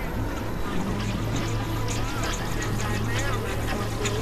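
Experimental synthesizer drone music: a steady low hum under wavering, gliding pitched tones, with scattered high crackles in the middle.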